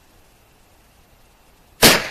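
A single shot from a Taurus Judge revolver firing .45 Colt, near the end: one sharp crack with a short tail dying away over about half a second.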